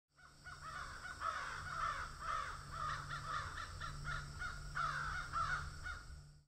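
Crows cawing, a quick run of calls two or three a second, over a low steady hum.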